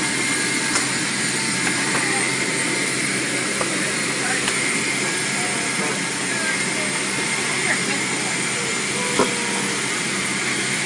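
Steady aircraft turbine noise on the ground, a constant rush with a high steady whine, and a faint knock near the end.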